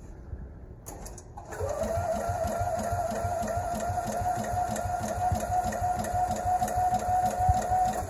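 John Deere Gator's starter-generator spinning the engine over through its newly fitted drive belt. A whine rises and then holds steady over a regular low chugging, starting about a second and a half in and cutting off suddenly at the end.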